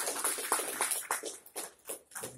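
Audience applauding with dense, irregular clapping that thins out and fades near the end.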